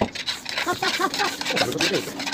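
Rubber bicycle inner tube being rubbed and handled during a puncture repair: quick scraping rubs with short squeaks of rubber.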